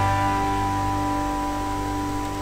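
Background music with a few long held notes, fading slightly.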